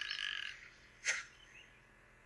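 Cartoon frog croak sound effect from a DVD menu, tailing off in the first half-second, followed by one short sharp sound about a second in, then near silence.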